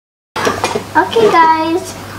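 Silence for about the first third of a second, then a child talking.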